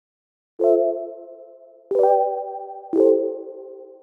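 Background music: three sustained chords struck about a second apart, each ringing on and fading away.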